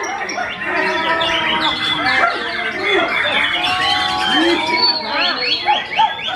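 Caged white-rumped shamas (murai batu) singing a dense, overlapping run of varied whistles and quick rising and falling phrases, with voices underneath.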